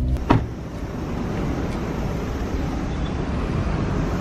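Steady road traffic noise from cars passing along a street, after a short knock just after the start.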